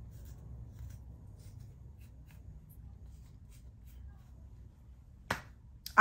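Faint scattered ticks and rustles of hands and a comb working through hair, over a low room rumble, then one sharp click or knock about five seconds in.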